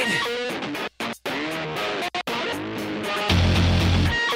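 Rock music with electric guitar, cutting out briefly twice, about a second in and just after two seconds; a heavy low end comes back in near the end.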